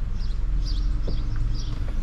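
Steady low rumble of a car idling, heard from inside the cabin, with a few faint bird chirps from outside.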